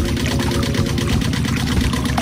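Small motor of a miniature model water pump running steadily with a fast, even rhythm, while water pours from its pipe onto wet sand.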